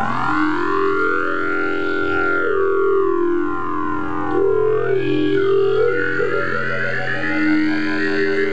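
Jew's harp (jaw harp) played close into a microphone: a steady low drone, with the player's mouth picking out overtones that glide up and down in sweeping, siren-like arcs.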